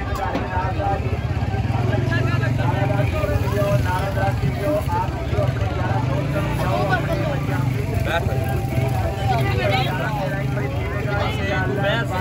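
Several people talking in the background over a steady low rumble.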